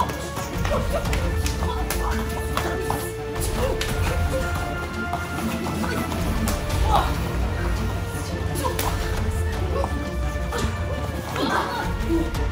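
Background music with a steady bass, over several sharp hits of kicks and blocks landing in pencak silat sparring, the loudest about seven seconds in.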